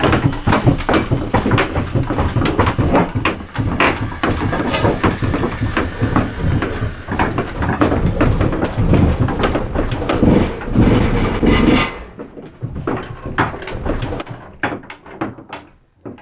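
Dense, loud knocking, clattering and rustling in a small wooden room, thinning to scattered clicks about twelve seconds in and dying away near the end.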